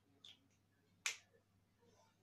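A few faint, short clicks amid near silence, the clearest about a second in: small plastic handling sounds from a glitter glue pen.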